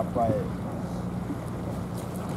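A steady low motor hum under wind noise on the microphone, with a man's voice trailing off in the first half second.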